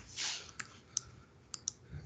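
A few scattered, sharp clicks of a computer mouse, with a short soft rush of noise near the start.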